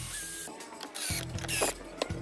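Cordless drill boring through a hardened wood-filler plug in a board, then a few short bursts of the drill, as a screw is driven into the filled hole, under background music.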